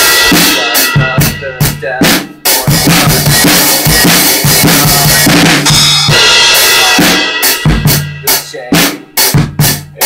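Drum kit played in a loud beat, cymbals ringing over kick and snare drum. In the last three seconds the playing opens into separate, sparser hits with short gaps between them.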